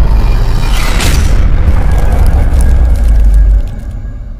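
Cinematic logo-intro sound effect: a loud, deep booming bass rumble with a sweep about a second in, dropping away sharply near the end.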